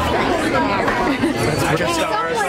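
Indistinct chatter of several voices talking at once, with no single clear speaker, in a busy room.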